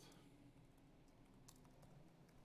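Faint keystrokes on a laptop keyboard: a few separate clicks as a terminal command is typed.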